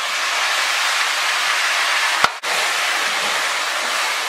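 Seasoned goat pieces sizzling loudly in caramelised brown sugar in a hot enamelled pot while being stirred with a spoon, the sugar browning the meat. A single knock sounds a little over two seconds in, and the sizzle drops out for a moment right after it.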